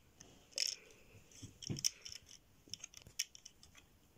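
Small plastic clicks and taps of Lego pieces being handled and pressed into place on the set, with a few sharper clicks among them.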